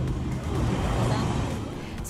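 A motor vehicle running close by on a street, its low engine hum steady under road noise that swells around the middle and eases off.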